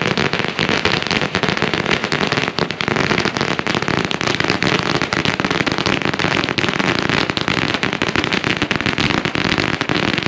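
A long string of red paper firecrackers burning down on the ground, going off in a continuous rapid run of sharp bangs with no break.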